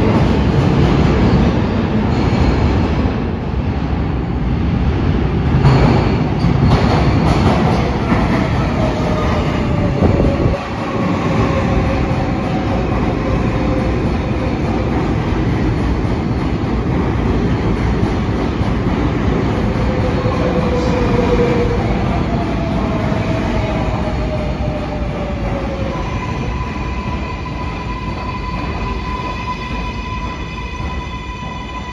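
Kawasaki R188 subway train running slowly into the station, with wheel and track rumble and electric motor whines falling in pitch as it slows. Near the end a steady high squeal joins in.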